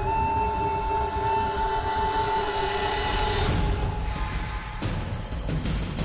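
Tense background score made of sustained droning tones, which shift about three and a half seconds in.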